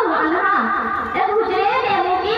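A voice amplified through a public-address system into the tent, speaking or chanting without a break, its pitch rising and falling.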